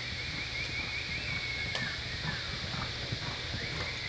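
Reining horse loping on soft arena dirt, its hoofbeats dull and uneven. A thin, wavering high tone runs through it, with a couple of sharp clicks.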